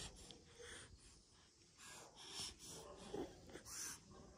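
Very faint, soft breaths close to the microphone, a couple of airy puffs about two seconds in and again near the end.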